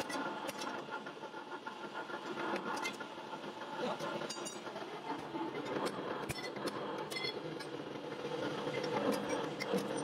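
Machinery running steadily, with scattered sharp clicks and knocks.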